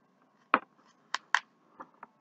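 Scissors snipping: three short, sharp snips and a fainter fourth near the end.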